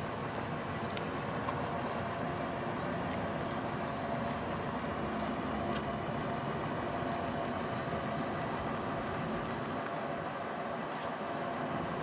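Steady outdoor background noise, an even rush with a faint hum under it, unchanging throughout.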